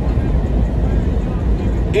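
Steady low rumble of a running vehicle engine, such as a truck idling.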